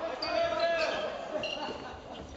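A handball bouncing on the sports-hall floor during play, mixed with shouted voices in the hall.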